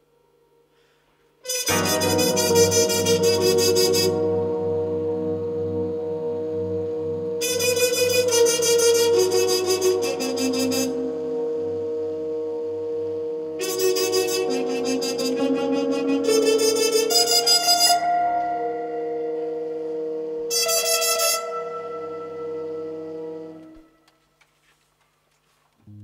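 Jazz big band playing live: after a moment of quiet the band comes in with sustained chords over a steady bass. The trumpet section plays four loud, bright passages of rapid notes, the last one short, and the music stops shortly before the end.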